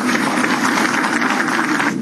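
Audience applauding, a steady dense clatter of many hands clapping in a hall.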